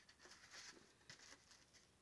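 Faint rustling and scuffing of disposable foam bowls and a foam takeout container being handled, several brief scrapes in the first couple of seconds.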